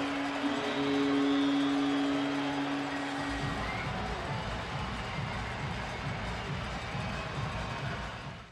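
Arena goal horn sounding over a cheering crowd, a long steady tone that stops about three seconds in. Arena music with a low beat follows under the crowd noise.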